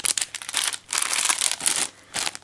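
Clear plastic packaging crinkling and crackling as packs of craft embellishments are handled and shuffled. The crinkling comes in two stretches, with a short lull a little under a second in.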